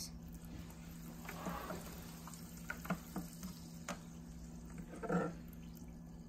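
A wooden stir stick stirs sparkling mineral water in a plastic cup, with a soft fizz of carbonation and scattered light clicks and scrapes of the stick against the cup.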